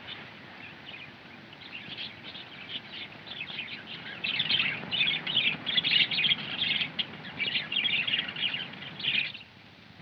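A bird singing a fast run of high chirps, faint at first and much louder from about four seconds in, then stopping abruptly near the end.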